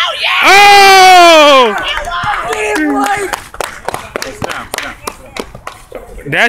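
A loud, drawn-out yell from one person, about a second and a half long, its pitch falling away at the end: a reaction to a shot going up at the basket. Scattered voices follow, then a run of short sharp taps in the last couple of seconds.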